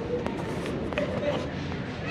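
Airport terminal background noise: a steady hum with indistinct voices in the distance and a few light clicks.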